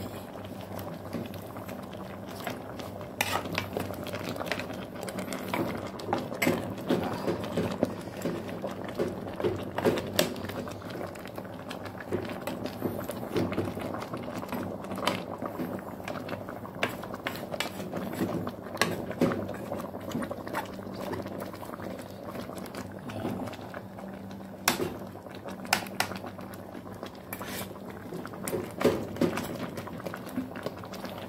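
Pot of mung bean and vegetable soup boiling on a gas stove: steady bubbling with frequent sharp pops, over a low steady hum.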